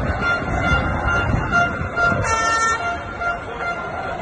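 Street crowd noise with a horn tooting a steady note in short repeated pulses, and a louder, brighter horn blast about two seconds in.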